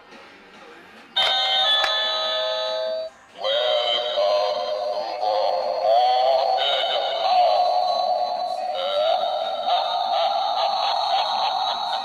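Novelty witch-face Halloween doorbell, its button pressed, playing an electronic chime about a second in, then, after a short break, a synthesised voice singing over music until near the end.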